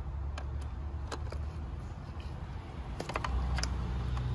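Plastic wiring connectors being unplugged from a Honda Insight's ignition coils with pliers: a few sharp clicks and clacks, with a quick cluster about three seconds in. Underneath is a low rumble that grows louder near the end.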